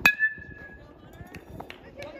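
Metal baseball bat hitting a pitched ball: one sharp ping that rings on for under a second.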